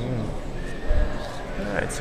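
Indistinct voices of people talking in the background, with a low thump about a second in; a man's voice begins speaking near the end.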